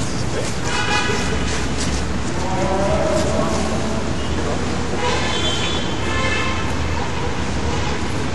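Steady outdoor background rush, with a few short pitched calls or toots over it: one about a second in, a lower, longer one around three seconds, and two more around five and six seconds.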